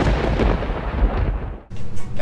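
Explosion sound effect: a loud boom with a long rumbling decay that stops abruptly near the end.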